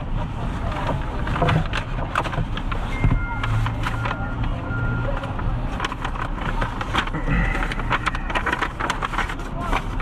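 Clicks, knocks and rustling as a seatbelt is unbuckled and papers are fetched from the car's dashboard, over steady city traffic noise, with a few short faint beeps in the middle.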